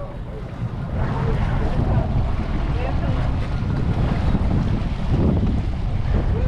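Steady wind buffeting a hat-mounted camera microphone, with the low running noise of a fishing boat and the sea beneath it.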